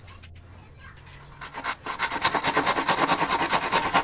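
Fast, even back-and-forth rubbing strokes by hand, about eight or nine a second, starting about a second and a half in.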